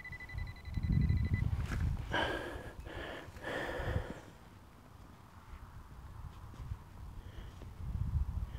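A steady high metal-detector tone sounds for about a second and a half at the start as the target in the hole is located. Then come crunching and rustling of soil and straw stubble handled close to the microphone as gloved hands break up and sift a clump of earth to find the object.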